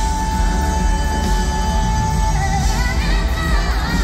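Live pop music from a full band in an arena, recorded among the crowd, with heavy bass. A singer holds one long high note for about two seconds, then moves into a wavering vocal run.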